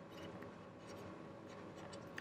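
Faint scratches and small ticks of a stylus writing on a tablet screen, over a steady faint room hum.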